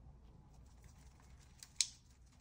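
A paintbrush working in the pans of a watercolour palette: faint scrubbing and light ticks, with one sharp click near the end.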